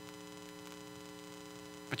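Steady electrical mains hum, a low buzz made of several constant tones, in a pause between spoken words. A man's voice comes back in at the very end.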